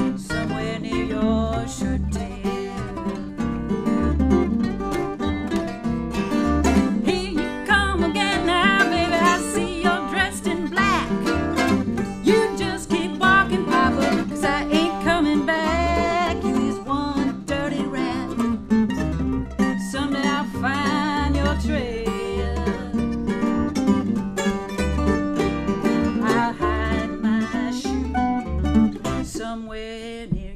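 Acoustic old-time string band playing a bluesy swing tune: steel-string acoustic guitar strumming, upright bass plucking a steady beat, and mandolin picking over the top. The tune ends near the close.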